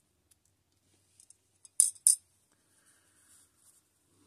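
Two short, sharp clicks about a third of a second apart near the middle, with faint small ticks around them, from tweezers and small tools handling a thin plastic hose on a scale model's front fork.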